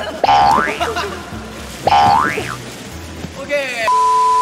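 Two cartoon 'boing' spring sound effects, each a rising pitch glide about half a second long, about a second and a half apart, over background music with a steady beat. Near the end comes a falling glide, then a steady test-tone beep as the picture breaks into colour bars.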